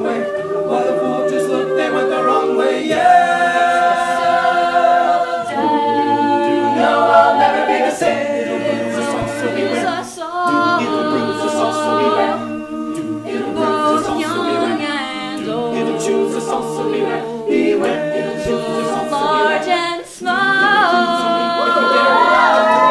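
An a cappella group of men and women singing without instruments, holding chords in close harmony, with short breaks in the sound about ten and twenty seconds in.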